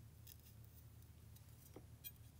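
A few faint, short cuts of a Zwilling J.A. Henckels Twin Fin kitchen knife slicing into raw carrot while carving a decorative flower shape, over a low steady hum.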